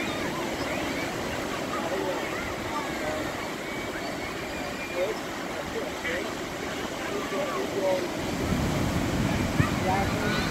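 Ocean surf breaking on the beach, a steady wash, with distant voices of people in the water calling and chattering. Wind rumbles on the microphone near the end.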